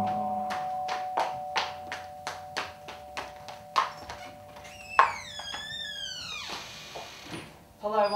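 Light regular clicks, about three a second, over a faint steady tone; then, about five seconds in, a door hinge creaking as the door is opened: a high, wavering squeal gliding downward for about a second and a half.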